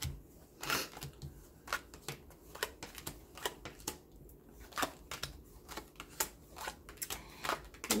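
Tarot cards being dealt one by one off the deck and laid down on a hard tabletop: a quick, irregular run of light snaps and taps, a few every second.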